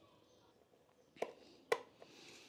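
Two sharp clicks about half a second apart, from multimeter test probes being handled against the fuses in a motorcycle's fuse box; the meter makes no beep.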